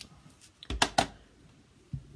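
A clear acrylic stamp block set and pressed down onto paper on a hard craft desk, giving a few sharp knocks about a second in, two of them loud and close together.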